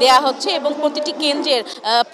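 A woman speaking Bengali in a continuous talk to camera.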